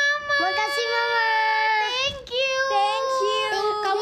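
A young, high-pitched voice singing long held notes: three drawn-out tones with short slides in pitch between them.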